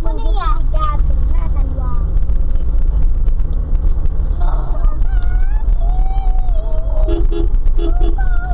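Steady low rumble of engine and road noise inside a moving car's cabin, with a person's voice rising and falling over it. A few short tones sound near the end.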